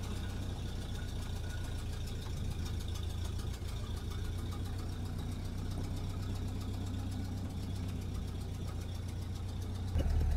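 1931 Ford Model A's four-cylinder flathead engine running steadily at low revs.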